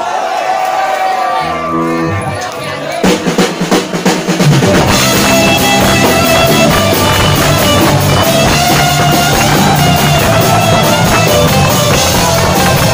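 Punk rock band playing live and starting a song: a voice over a few single notes, a burst of drum hits about three seconds in, then the full band with electric guitars and drums coming in about five seconds in.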